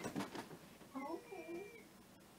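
A cat meowing once, about a second in, a short call that bends in pitch, after a brief burst of laughter.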